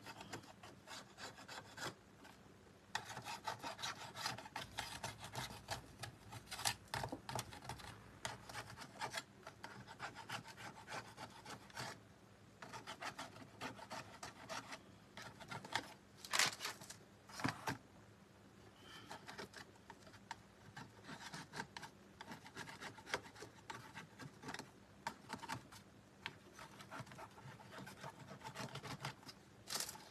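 Short, repeated scraping strokes of a small hand scraper on the edges of a painted ornamental frame, with a few brief pauses, distressing the paint so the dark base coat comes through.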